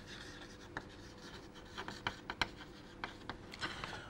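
Chalk writing on a chalkboard: faint scratching strokes broken by several sharp taps as the chalk meets the board.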